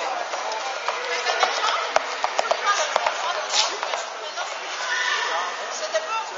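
Hooves of a Rocky Mountain Horse striking a carpeted floor at a tölt, a quick run of short knocks, mostly in the first half, over people's voices chattering in a large hall.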